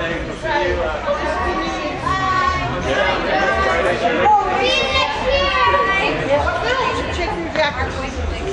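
Several spectators' and players' voices talking and calling out over one another in a large indoor soccer arena.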